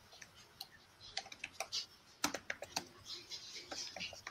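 Faint typing on a computer keyboard: irregular keystroke clicks, sparse at first and quicker from about two seconds in.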